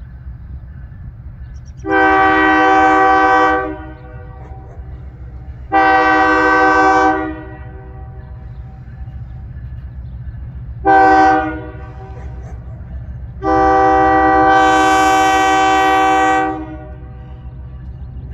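Diesel locomotive air horn sounding the grade-crossing signal: two long blasts, one short, then a final longer one, each a chord of several tones, over a steady low rumble.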